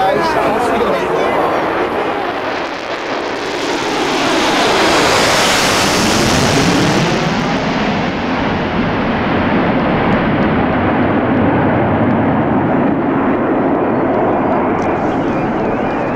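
Concorde's four Olympus 593 turbojets at take-off power with reheat, a loud roar that swells to its loudest around five to seven seconds in, then runs on steadily as the aircraft climbs away.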